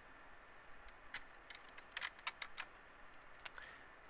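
A few faint, irregular clicks of computer input buttons, most of them between one and three seconds in, as the last few digitized symbols are undone.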